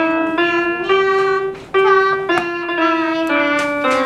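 Roll-up electronic keyboard played one note at a time: a slow, simple melody of about seven held notes with a short break in the middle.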